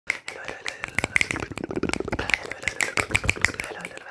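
Rapid finger snaps and hand clicks close to the microphone, about six a second, in quick, irregular succession.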